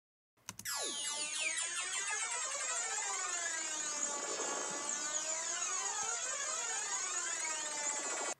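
Synth LFO riser sound effect from a tech house track, played solo: a bright, quirky tone made of many partials gliding up and down in crossing sweeps. It lasts four bars, starting about half a second in and cutting off at the end.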